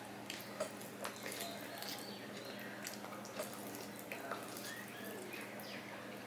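Close-up wet chewing and lip-smacking of a mouthful of rice and curry eaten by hand, heard as a string of soft, irregular clicks.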